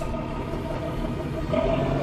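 A fishing boat's engine running steadily with a low hum.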